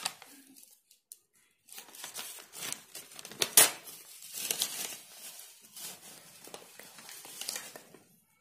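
Newspaper rustling and tearing in short, irregular bursts as small pieces are torn off and pressed onto glued paper. There is a brief pause about a second in.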